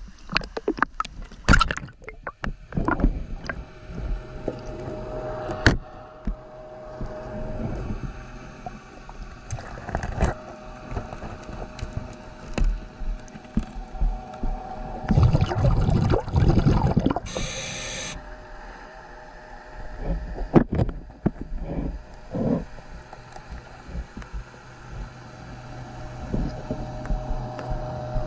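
Underwater sound picked up by a submerged camera along a fouled boat hull: gurgling bubbles and water noise in irregular rumbling surges, with scattered clicks and knocks and a faint steady hum.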